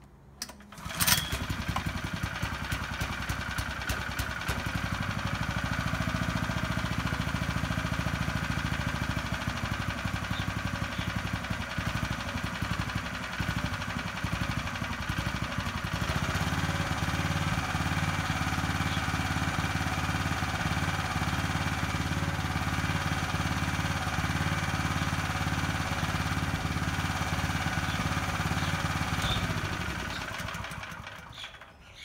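Brand-new single-cylinder Briggs & Stratton mower engine being pull-started after an oil change. It catches almost at once, about a second in, and runs steadily. About halfway through, its note changes and settles steadier as the controls are adjusted. Near the end it is shut off and runs down.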